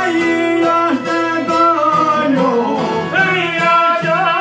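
Albanian folk song: men singing over a bowed violin and plucked long-necked lutes such as the çifteli. The voices hold long notes that slide between pitches, with steady plucking underneath.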